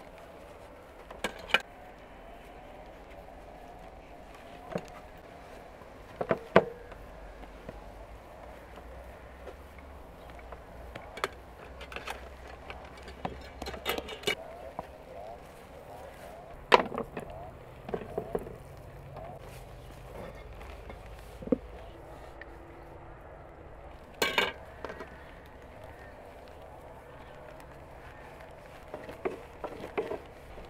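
Scattered, irregular sharp knocks and taps of dough being worked on a wooden board, with a knife and rolling pin, over faint background voices.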